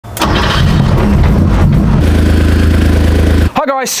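Porsche 911 Carrera 3.2 air-cooled flat-six on 46mm IDA Weber carburettors starting up: it fires at once and runs unevenly for about two seconds, then settles into a steady, even note until it cuts off sharply near the end, where speech begins.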